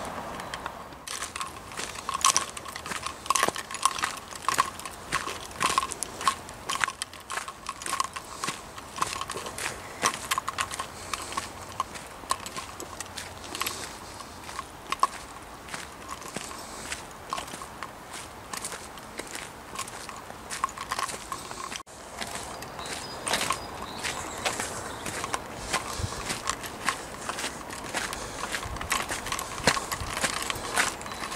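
Footsteps on a gravel and dirt path, a steady walking run of sharp crunching steps.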